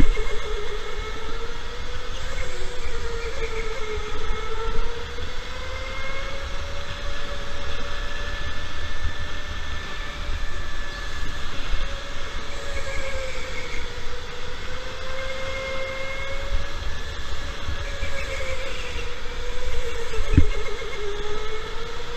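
Electric go-kart motor whining, its pitch rising and falling with speed through the corners, over the low rumble of the kart rolling on the track. A single thump comes about two seconds before the end.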